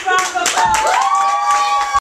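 Scattered hand clapping with children's voices calling out; from about halfway a high voice holds one long steady note over the claps.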